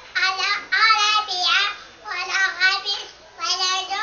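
A young girl singing solo without accompaniment, in short phrases with held, wavering notes and brief breaths between them.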